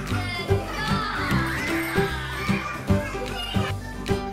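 A children's play song with a steady beat, with young children's voices singing and calling out along with it.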